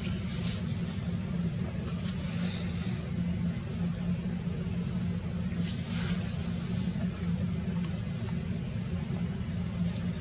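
Steady outdoor background noise: a constant low rumble with a steady high-pitched drone above it, broken by a few short, high chirps.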